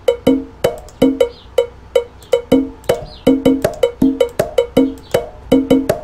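Looping step-sequenced conga pattern: sampled high and low conga hits on two pitches, with a sharp clicking percussion keeping a steady pulse of about three to four hits a second.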